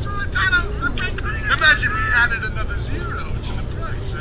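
Muffled film dialogue played from a television and picked up off the set's speaker, over a steady low hum.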